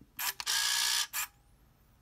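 Minolta Freedom Dual 35mm point-and-shoot film camera firing: a short click, then its motor winder running for about half a second, and a second click. A faint rising whine follows as the flash recharges.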